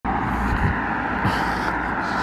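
Steady road traffic noise from a car driving along the road.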